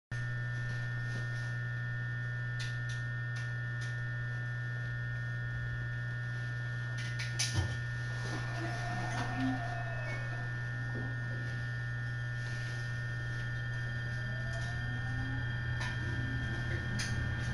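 Steady electrical hum with a constant high tone inside an electric train car standing at a platform. There is a short knock about seven and a half seconds in, and a faint rising whine near the end as the train starts to move off.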